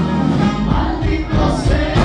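Live Tejano band playing, with vocals.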